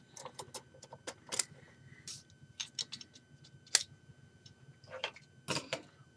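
Lego Hero Factory set's plastic parts clicking and knocking as the model is handled and a section is pulled off. It is an irregular scatter of light clicks, with two sharper ones about a second and a half and nearly four seconds in and a quick run of clicks near the end.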